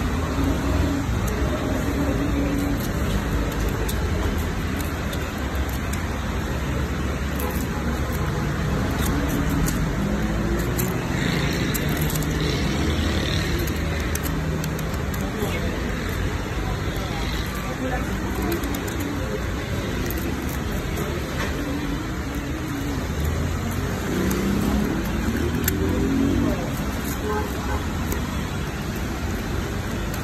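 Steady road-traffic rumble from passing cars, with faint indistinct voices in the background.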